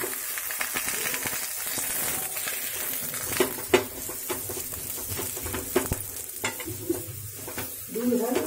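Paratha sizzling in ghee on a hot tawa, with a steel spoon scraping across it and a few sharp taps of the spoon on the pan, the loudest a little before halfway.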